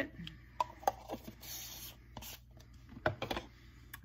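Light clicks and taps of a small plastic pigment jar and its lid being handled on a glass slab, with a short soft hiss about a second and a half in.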